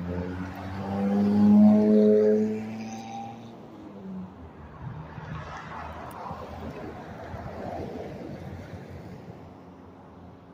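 A passing car's horn sounds one held honk of about three seconds near the start. A car then drives close by with tyre and engine noise swelling and fading about halfway through.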